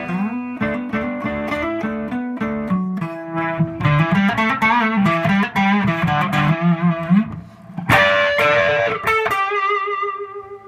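Electric guitar, a Fender Stratocaster played through a Mooer Rumble Drive (a Dumble-style overdrive pedal) into a Fender Twin Reverb amp, playing a blues lick: single notes, then bent notes with vibrato, and struck chords about eight seconds in.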